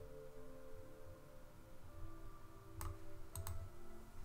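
A few quiet computer mouse clicks about three seconds in, over faint soft background music.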